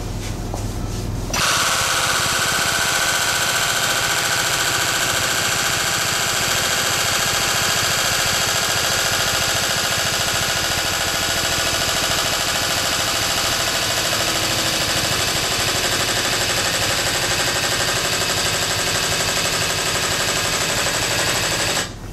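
Powered pump of a body-straightening puller running, a loud, steady, rapid mechanical rattle as the rear of a car body is pulled. It starts about a second in and cuts off just before the end.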